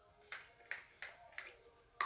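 Pump-action bottle of makeup setting spray misted onto the face in four quick spritzes, each a short hiss, about a third of a second apart.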